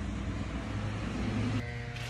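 Road traffic: a steady low engine rumble from vehicles on the street beside a bus stop.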